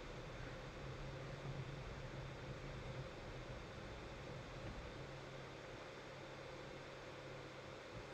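Quiet room tone: a faint steady hiss with a low hum.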